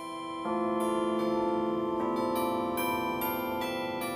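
Carillon chimes playing a slow melody: tuned metal rods, struck from a keyboard console and tuned to sound like cast bells. A new note sounds every third to half second, each ringing on under the next.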